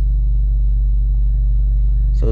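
Steady low hum inside the cabin of a running car, with no other sound.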